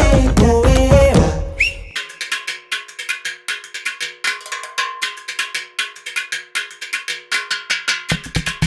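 Tamil film-song music: the full band with a sung line drops away about two seconds in, leaving a break of fast, dry, clicking metallic percussion over a faint ringing tone. The bass and drums come back in at the very end.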